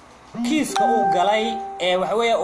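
A single steady pitched tone, held at one note for a little over a second, sounding under a man's speech.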